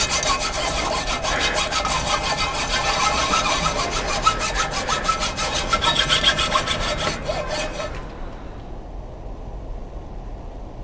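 Hand bow saw cutting through a log, the blade running in a steady, rapid series of strokes that die away about eight seconds in.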